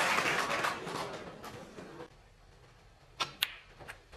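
Audience applause dying away over the first two seconds, then near quiet and three sharp clicks of snooker balls about three seconds in: cue tip on cue ball and ball striking ball.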